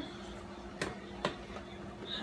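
Two light clicks about half a second apart as plastic seasoning bottles are shaken over the pot and handled, against a steady faint hum.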